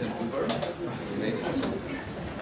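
Indistinct, low voices: soft off-microphone talk and murmuring in a room.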